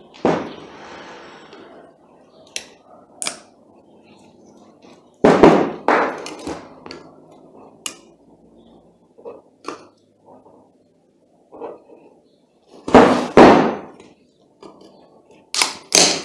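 Screwdriver knocking and prying against the metal end cap of a reversible Acros washing-machine motor, working the end cap and stator loose. Irregular knocks and clinks come in bunches, the heaviest about five seconds in and again about thirteen seconds in.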